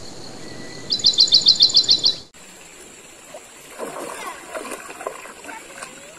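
A bird singing a quick run of about nine repeated high notes. After an abrupt cut, water lapping with irregular small splashes at the surface.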